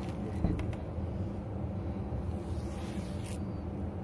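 Steady low background hum, with a brief rustle of faux fur being handled on the table about three seconds in.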